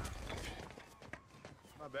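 The low rumble of a crash landing into asphalt fades out, followed by faint scattered taps and scrapes of rubble. A man's voice starts at the very end.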